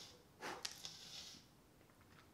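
Near silence with faint handling of a knife sharpener: a soft scrape about half a second in, then a light click.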